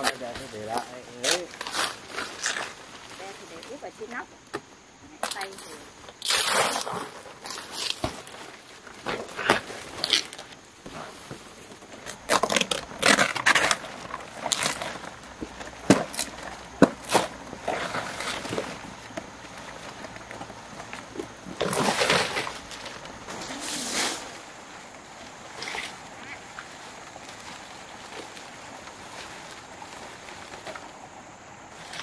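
Large fan palm fronds rustling and crackling as they are handled, with sharp knocks of a machete cutting through the leaf stems. The sounds come in irregular bursts and die down over the last few seconds.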